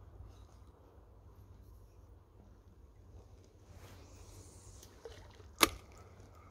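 Faint low rumble of fishing tackle being handled while a spinning lure is retrieved through the river, with light scattered ticks. A single sharp click, much louder than the rest, comes about five and a half seconds in.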